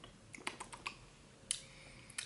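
Faint mouth clicks and smacks of someone tasting a spoonful of cashew yogurt, a quick run of small clicks followed by one sharper click about a second and a half in.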